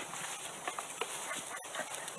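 Young bonobos making a string of short squeaks and peeps while clambering over a person, over a steady high hiss.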